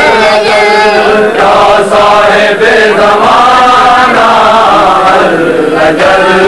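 Many men's voices chanting a Shia devotional lament (noha) together, loud and steady, the melody gliding up and down without a break.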